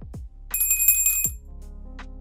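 Background music with a beat, and about half a second in a bright, high bell-like notification ding that rings for under a second.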